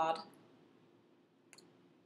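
Faint clicks from a lipstick tube being turned over in the fingers, a couple of them together about one and a half seconds in, in an otherwise quiet room.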